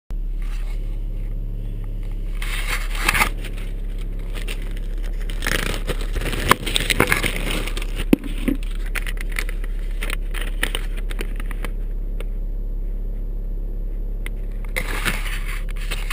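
Handling noise from a small camera being fitted and adjusted inside a pickup cab: rubbing, scrapes and knocks, busiest between about six and nine seconds in. Under it runs the steady low hum of the pickup's engine idling.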